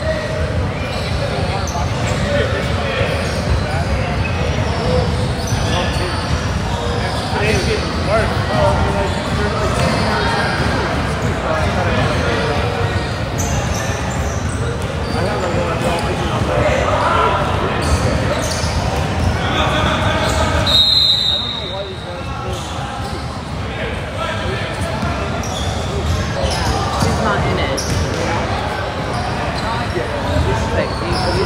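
Basketball bouncing on a hardwood gym floor during a youth game, with the indistinct voices of players and spectators echoing in the large hall. A short high whistle blast comes about two-thirds of the way in, and the play sounds die down a little after it.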